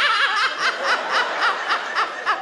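A man laughing in a rapid, high-pitched run of short giggles, about four a second.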